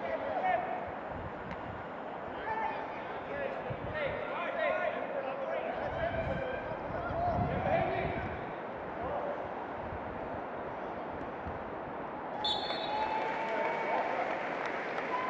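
Distant shouting of young footballers and onlookers during a youth football match, over a steady open-air background; a higher, clearer call comes in near the end.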